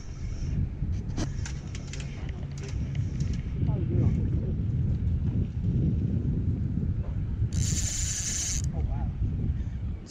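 Low rumble of wind on the microphone, with scattered clicks from handling a spinning rod and reel while reeling in a hooked fish. About three-quarters of the way through comes a hissing burst about a second long.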